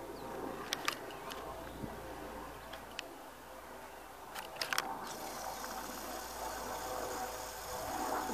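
Quiet outdoor ambience with a faint steady hum and a few short sharp clicks, several of them close together about four and a half seconds in.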